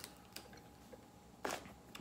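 Quiet handling of a hot sauce bottle as its cap and seal are being opened: a light click about a third of a second in, and a short scraping rustle about a second and a half in.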